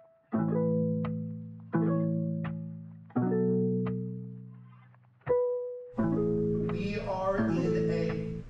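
Background music: plucked-string chords, each struck and left to ring and fade, roughly every one and a half seconds. From about six seconds in, a busier, brighter layer joins.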